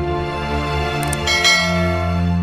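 Music plays throughout. About a second in come two quick clicks, then a bright bell chime: a notification-bell sound effect.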